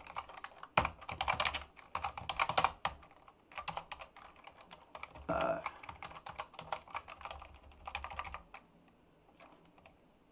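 Computer keyboard being typed on in quick, irregular runs of key clicks that stop about a second and a half before the end.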